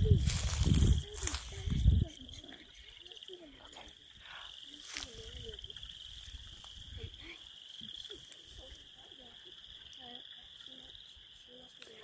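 A steady, high-pitched chorus of frogs calling, with faint short lower calls scattered through it. A loud low rumble on the microphone covers the first two seconds.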